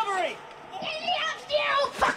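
High-pitched voices talking and exclaiming, with a short lull about half a second in; no music is audible.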